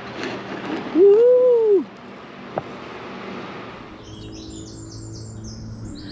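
A woman's drawn-out 'whooo' about a second in, rising and then falling in pitch. In the last two seconds, songbirds sing in quick repeated high phrases over a low steady hum.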